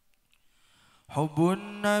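Near silence for about a second, then a solo male voice begins singing an unaccompanied Arabic devotional song (a sholawat qasida) into a microphone, in long held notes.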